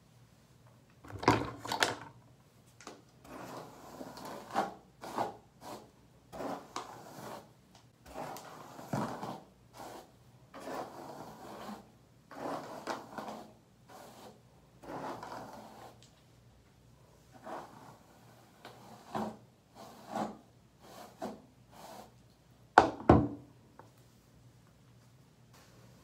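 Irregular rustling and scraping strokes as long wet hair is worked and gathered up into a ponytail, with sharper knocks about a second in and near the end.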